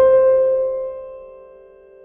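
Soft background piano music: a single chord struck at the start and left to ring and fade.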